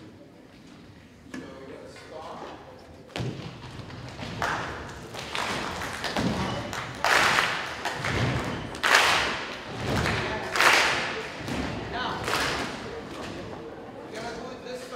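An audience practising a rhythm of foot stomps and hand claps. It starts about three seconds in and grows louder, with low stomps alternating with sharp group claps.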